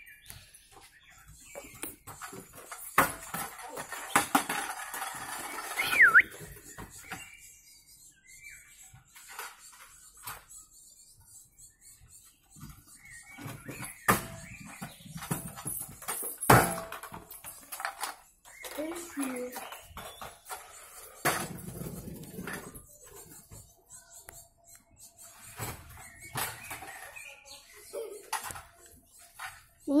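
Stunt scooter rolling and rattling over paving stones, with a series of sharp knocks from the deck and wheels hitting the ground as tricks are landed.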